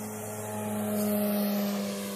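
Radio-controlled model propeller plane's engine droning in flight, holding a steady pitch. It grows louder through the middle, then eases off slightly near the end.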